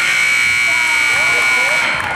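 Gym scoreboard buzzer sounding one steady, loud electronic buzz for about two seconds, stopping just before the end, with crowd voices underneath.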